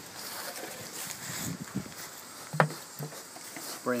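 Steady hiss of low-pressure spray nozzles misting water under a pig-pen canopy, fed from a quarter-inch hose through a pressure regulator. A sharp click with a short low sound comes about two and a half seconds in.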